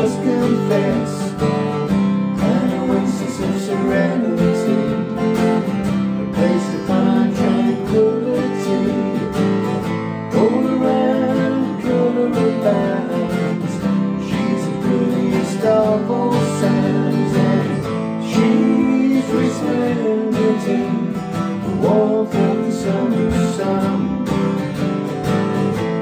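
Two steel-string acoustic guitars playing a song together, strummed chords with picked notes, with a man singing over them.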